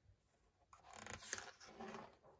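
A page of a hardcover picture book being turned by hand: soft paper rustling with a few light clicks, starting a little under a second in.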